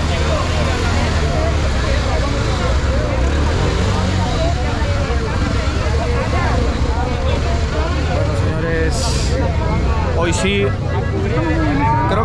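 A large crowd shouting and talking over one another, with police motorcycle engines running low and steady as the bikes ride slowly through the crowd.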